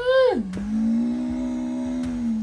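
A man's voice draws out a long "a". It rises and falls in pitch at the start, then holds one steady low note, almost sung, for about two seconds.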